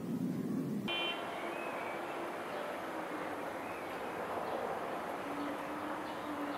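Steady outdoor background hiss with a few faint, short high chirps. A lower rumble stops abruptly at an edit about a second in.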